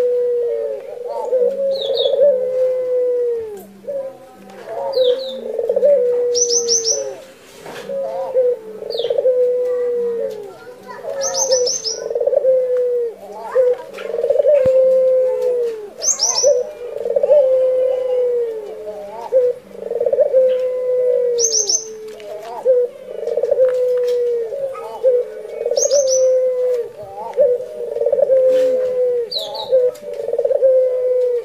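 Burung puter (domesticated Barbary dove) cooing over and over, one falling cooing phrase about every two seconds, the steady non-stop calling of a 'gacor' dove. A higher-pitched bird gives short chirps every few seconds.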